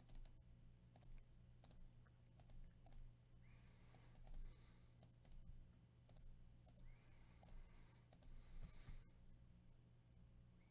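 Faint computer mouse clicks, a sharp click about every second, over a steady low hum.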